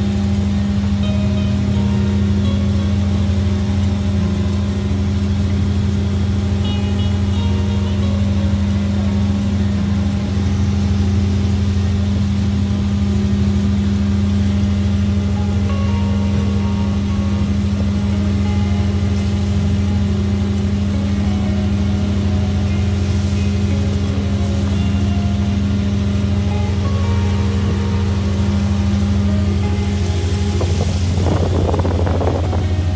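Steady low drone of the shrimp trawler's engine, with background music of short shifting notes over it.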